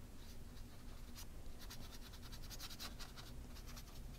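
Faint soft strokes of a wet paintbrush across sketchbook paper, with a quick run of short strokes through the middle.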